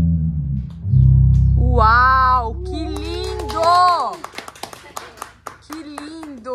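Electric and acoustic guitars hold a final low chord that cuts off about three and a half seconds in, with a voice calling out over the end of it. Scattered hand claps from the listeners follow.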